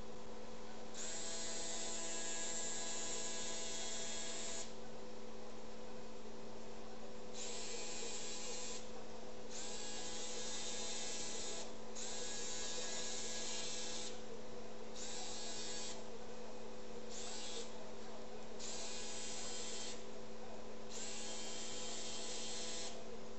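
Motorized arthroscopic shaver with a burr tip running in short on-off bursts, about eight in all, each lasting one to three seconds, over a steady equipment hum.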